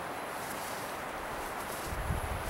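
Steady wind noise on the microphone with outdoor background hiss, even throughout and without distinct events.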